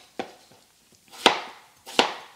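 Chef's knife slicing through a peeled raw potato and knocking down onto a cutting board, a cut about once a second, each ending in a sharp knock.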